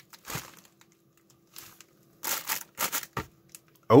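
Thin plastic packaging crinkling as it is handled: several short, separate crackly rustles a second or so apart.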